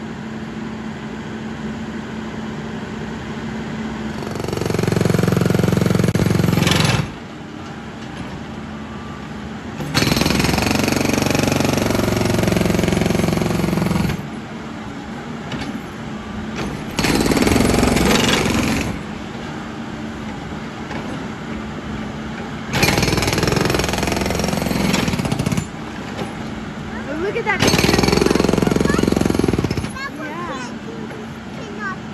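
Hydraulic impact hammer on a Cat backhoe loader hammering rapidly into street pavement, in five bursts of two to four seconds each. The backhoe's engine runs on between the bursts.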